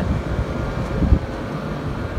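Wind buffeting the microphone in uneven low gusts, over a steady hum from rooftop air-conditioning condenser fans.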